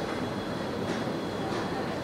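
Steady background noise of a shopping-centre food court: an even hum and hiss with no distinct events.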